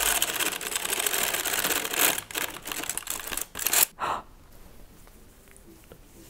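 Dean and Bean circular sock machine being hand-cranked through one final round, its latch needles clattering quickly in the turning cylinder as the knitting is cast off and the finished sock drops free. The clatter stops about four seconds in, leaving only quieter handling sounds.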